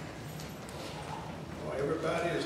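A lull in a man's speech: only faint voice and room sound, with his talking picking up again near the end.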